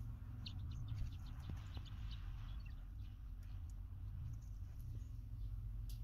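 Low steady hum of a running well pump system as the water pressure climbs toward the pressure switch's cut-out, with scattered faint high chirps over it.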